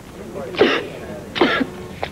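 A distressed woman clearing her throat twice, two short throaty bursts about a second apart.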